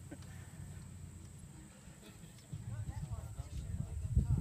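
Faint, distant voices of people on an open lawn, with a low rumble of wind buffeting the microphone that grows louder from about two and a half seconds in.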